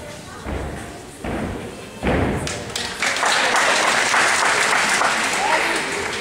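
A gymnast's feet and hands striking a sprung gymnastics floor during a tumbling pass: three heavy thuds a little under a second apart, each louder than the last. From about three seconds in, spectators cheer and clap loudly until near the end.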